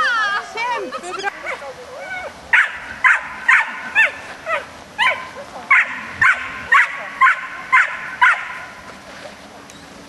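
A dog barking in a rapid series of short, high barks, about two a second, starting a couple of seconds in and stopping shortly before the end.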